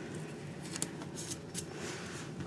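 A few faint crackles and light taps of a strip of tape being pressed and smoothed down onto a tabletop, mostly around the middle.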